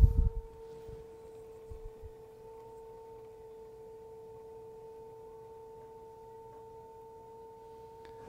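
Electric pottery wheel running: a steady, faint whine on one pitch with a fainter tone an octave above. A brief low thump at the very start.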